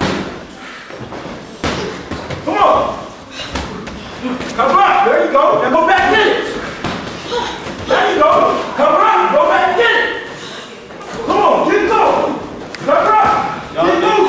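Boxing gloves landing punches in a sparring bout: scattered sharp thuds and slaps, mixed in with men's voices.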